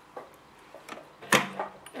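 A few light clicks from hands handling a metal bobbin and thread on a sewing machine's bobbin winder, with one sharp click a little past halfway.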